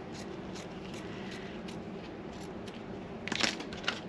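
Scissors snipping fabric in a few faint clicks over a low room hum, then a louder burst of handling noise about three seconds in.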